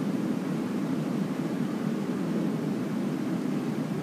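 Steady low background noise, a constant hum-like hiss of the recording's room tone, unchanging throughout with no distinct events.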